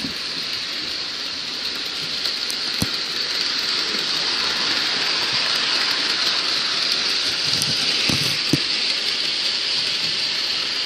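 Bachmann Thomas electric model train running on its plastic track: a steady high-pitched whirring hiss from the small motor and wheels, a little louder as the train passes close, with a few clicks over the track joints.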